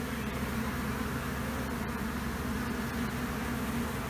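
A swarm of bees buzzing, a steady hum of many bees flying around a baited hive box and the bush where they are gathered.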